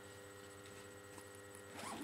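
Handbag zipper being pulled open, a faint scratchy rasp that grows louder near the end, over a steady electrical hum.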